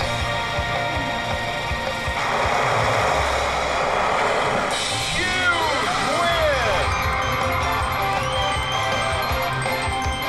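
Press Your Luck video slot machine playing its big-win celebration music and sound effects: a jingle with a burst of noise from about two to five seconds in, then several quick rising-and-falling whistles. It signals a 'Huge Win' at the end of a bonus round.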